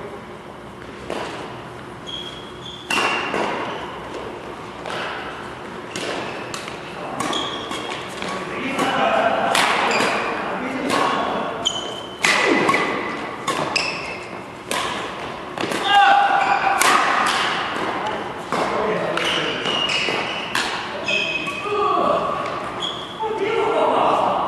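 Badminton doubles rally: a quick run of sharp racket strikes on the shuttlecock, with players' shoes on the court, thinning out near the end.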